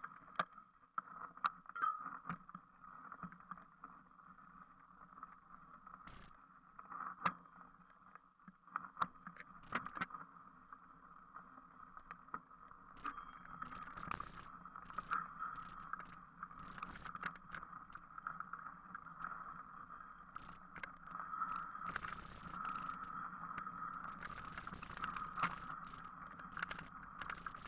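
Mountain bike ridden over a muddy, rutted dirt track: a steady muffled rolling and rushing noise, with scattered sharp knocks and rattles from the bike jolting over bumps, more frequent in the second half.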